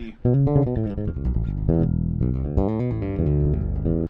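Electric bass guitar played solo: a fast run of distinct plucked notes, starting about a quarter second in.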